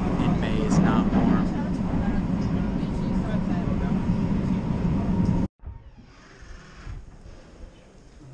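Metro train running, heard from inside the carriage: a loud steady rumble with a thin steady whine. It cuts off abruptly about five and a half seconds in, leaving only a faint background murmur.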